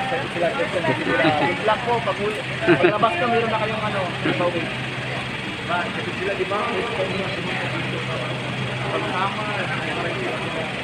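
Several people talking outdoors, loudest in the first half and fading to scattered voices, over a steady low mechanical hum.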